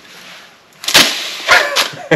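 Paper party blowers blown without giving a toot: a soft breathy hiss, then short sharp bursts from about a second in, the first the loudest.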